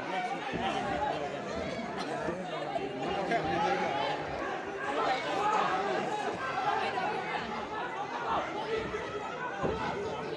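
A crowd of spectators chattering, many voices talking and calling out at once, at a steady level.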